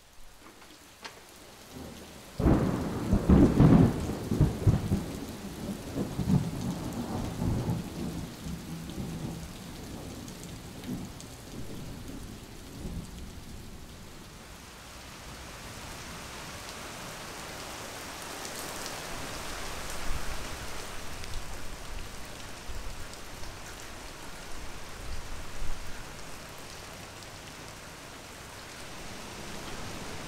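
A loud clap of thunder about two and a half seconds in, rumbling away over several seconds, then steady rain falling on a concrete driveway, growing heavier for a while near the middle.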